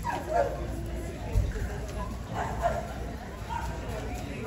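A dog barking and yipping a few short times over the steady chatter of a crowd, with a dull thump about a second and a half in.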